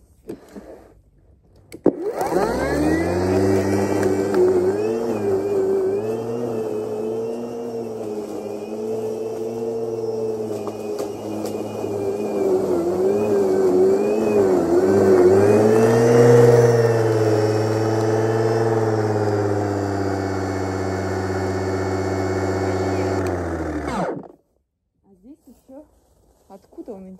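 Battery-powered electric lawn mower starting with a click about two seconds in and cutting long grass, its motor hum dipping and wavering in pitch as the blade takes load. It runs again after its full grass box was emptied, then is switched off near the end and spins down quickly.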